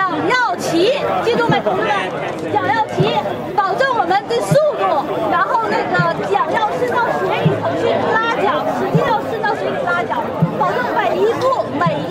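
Several people talking at once, overlapping voices throughout with a woman's voice among them.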